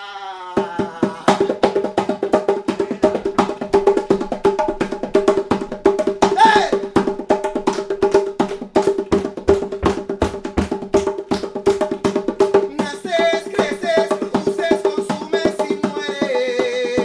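Metal goblet drum (darbuka) played with fast, even hand strokes in a continuous rhythm over a steady held drone note.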